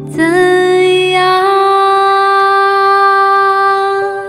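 A woman singing one long held note over a karaoke backing track, sliding up into it just after the start and then holding it steady almost to the end.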